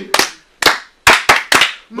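Several people clapping their hands: about seven sharp claps in an uneven rhythm, with short silences between them.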